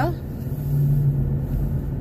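Car engine running, heard from inside the cabin as a steady low hum with a low rumble.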